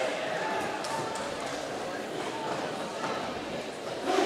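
Echoing sports-hall ambience: distant voices and crowd murmur, with faint clacks and rolling of roller skates on the gym floor.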